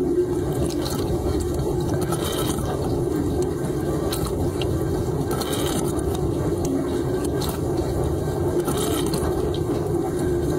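Water spraying inside a running dishwasher during its rinse cycle, heard from inside the tub: a steady rush of water with a low hum beneath and a few sharper spatters.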